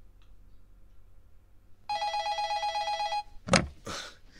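Telephone ringing with a fast trilling electronic ring for about a second and a half, starting about two seconds in. Then a short loud knock, the loudest sound, as the call is picked up.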